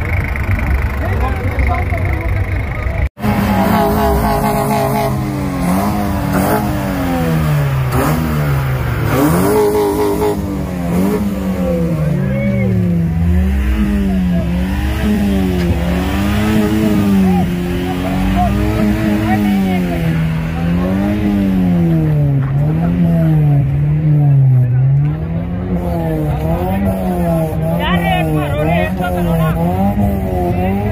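A car engine revved up and down over and over in a steady rhythm, its pitch rising and falling about once a second, with one long drop in revs about halfway through. The chatter of a crowd runs underneath.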